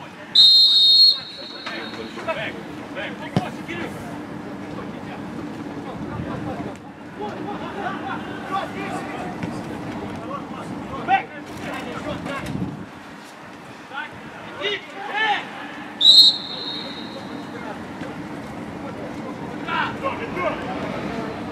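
Referee's whistle blown in two short blasts, one about a second in and one near the end, over scattered shouts and voices from players and a sparse stadium crowd.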